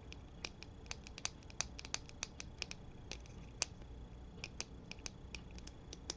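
Fingernails tapping and clicking on the plastic case of a L'Oréal Colour Riche Balm lip balm tube: light, quick, irregular taps, about three a second, with one sharper click a little past the middle.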